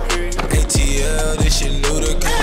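Skateboard on concrete, wheels rolling and the board knocking down as it comes off a ledge, mixed over a hip-hop track with a steady beat.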